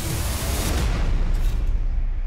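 Loud, deep rumble with a rushing hiss over it; the hiss dies away about a second in while the rumble goes on.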